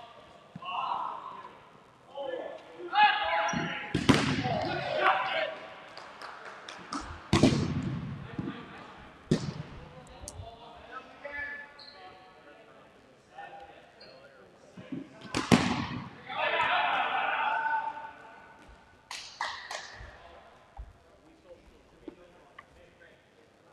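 Dodgeballs being thrown and hitting the hardwood gym floor and players, several sharp smacks that ring on in the hall: the loudest come about 4, 7, 9 and 15 seconds in. Players shout between the throws, with a longer stretch of shouting near the end.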